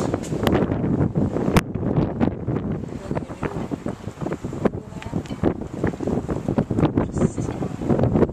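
Wind buffeting the camera microphone in gusts, with a sharp click about one and a half seconds in.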